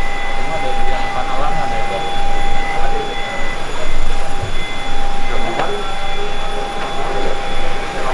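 Indistinct voices of people talking close by over a steady vehicle hum from the idling black minivan, with a faint continuous high tone running through it.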